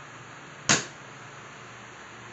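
A plastic water bottle flipped and landing on its cap on a tile floor: one sharp knock about two-thirds of a second in, over a steady faint hiss.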